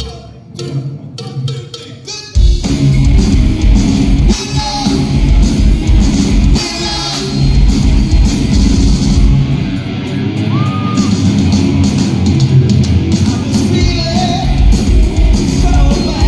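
Live rock band with electric guitar, bass and drums: a few sharp separate hits, then about two and a half seconds in the full band kicks in loud, with a voice singing over it.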